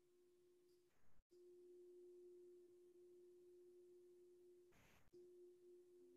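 Near silence with a faint tone held steady on one pitch. The tone is broken by a short soft noise about a second in and again about five seconds in.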